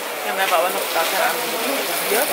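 People talking, with no single clear voice in front, over a steady hiss of street noise.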